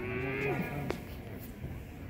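A person's drawn-out vocal call: one held note that drops away in pitch after about half a second, over a low crowd murmur, with a single sharp click shortly after.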